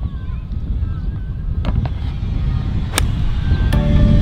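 Wind buffeting the microphone, with a single sharp click of an iron striking a golf ball from the tee about three seconds in.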